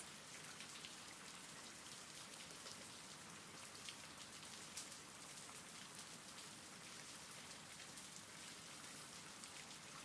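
Faint, steady rain: an even hiss of falling rain with light, dense patter of drops.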